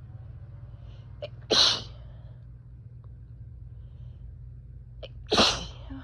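Two loud sneezes, about four seconds apart, each preceded by a short sharp intake of breath. They are allergy sneezes set off by freshly mown grass.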